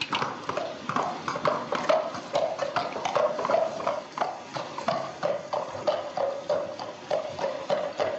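Horse's hooves clip-clopping at a steady pace on a wet street as a horse-drawn cab pulls away.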